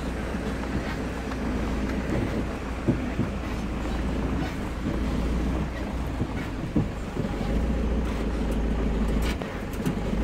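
Minibus running on the road, heard from inside the cabin: a steady low engine and road rumble, with a few sharp knocks and rattles from the body, two of them standing out about 3 and 7 seconds in.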